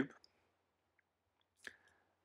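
Near silence with two short clicks: a faint one about a second in and a sharper one near the end.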